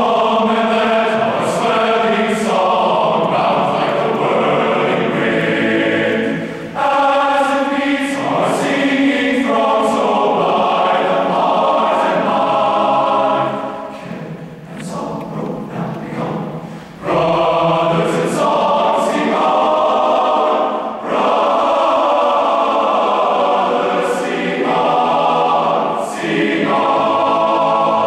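A large men's choir singing in full chorus, in loud sustained phrases with brief breaks between them and a softer passage about halfway through.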